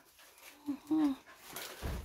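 Small long-haired dog whimpering: two short, falling whines about a second in.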